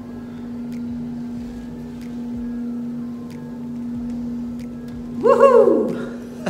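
A steady low hum with a few faint ticks as thin fine-line pinstriping tape is peeled off a freshly painted metal fuel tank. A brief, falling voice sound comes near the end.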